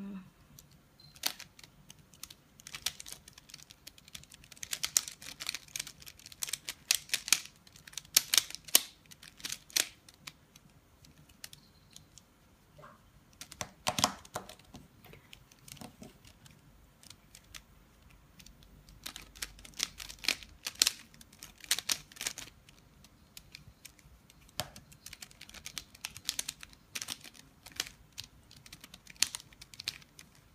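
Plastic mirror cube (3x3 mirror blocks puzzle) being turned by hand: rapid clicking and clacking as its layers snap round. The clicks come in irregular flurries with short pauses in between.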